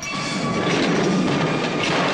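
A loud, dense rumbling noise, a film action sound effect, which almost covers the music.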